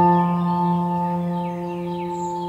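Ambient background music: a bell-like chord, struck just before, rings on and slowly fades. Faint bird chirps sound above it.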